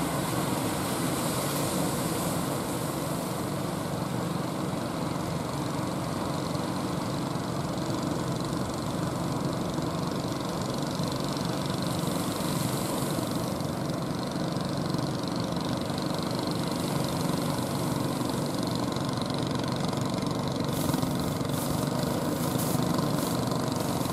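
Deck-mounted engines of a wooden outrigger fishing boat running steadily under power as it comes in through the waves, a continuous even hum.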